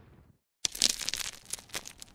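The tail of an explosion sound effect dies away, then after a brief gap comes about a second and a half of sharp, irregular crackling and snapping from an intro sound effect.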